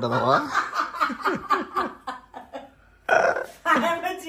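Human voices: a quick run of laughter-like vocal sounds falling in pitch, a short hush, then a loud exclamation about three seconds in.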